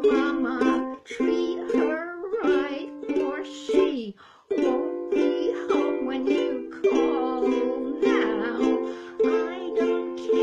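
A woman singing a 1923 popular song while strumming chords on a ukulele, with a brief break in the strumming a little before halfway.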